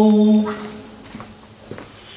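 A male singer holds a long sung note of a cappella nasheed that ends about half a second in. A quieter pause follows, with a few faint knocks.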